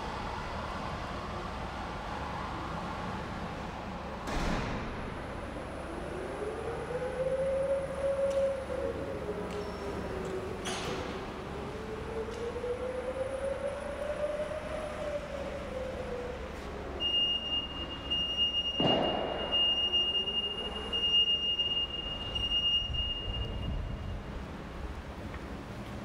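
Jungheinrich EFG 540k electric forklift driving, its electric drive whining in a tone that rises and falls with speed. A few sharp knocks come along the way. In the second half a steady high-pitched tone sounds for several seconds.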